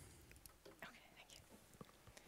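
Near silence with a faint, hushed exchange of words between two people at a lectern, and a few small clicks.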